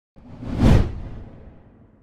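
A single whoosh sound effect with a deep low end, swelling to a peak just under a second in and then fading out.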